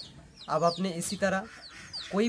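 A chicken clucking a few times, with small birds chirping short falling calls in the background.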